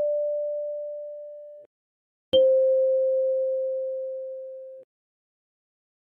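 Kalimba melody notes: the D5 tine, plucked just before, rings on and is cut off about a second and a half in. The C5 tine is plucked about two seconds in, rings with a slowly fading pure tone for about two and a half seconds, and is cut off.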